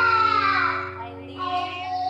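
A young child singing into a microphone over a musical backing with sustained chords; the sung phrase trails off about a second in and a new one starts shortly after.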